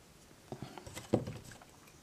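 Hands handling a small stitched cloth piece and its needle and thread: a few short rustles and taps, the loudest just over a second in.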